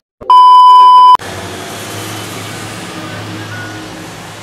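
Loud, steady electronic test-tone beep lasting under a second: the bleep of a TV colour-bars video transition. It cuts off suddenly into the steady hiss and low hum of a car driving on a wet street, heard from inside the car.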